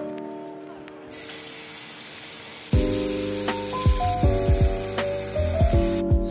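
Kitchen tap water running in a steady spray into a wooden bowl of vegetables in the sink, starting about a second in.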